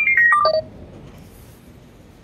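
A quick run of short electronic beep tones, each at a different pitch and stepping mostly downward, lasting about two-thirds of a second at the start, then only faint room tone.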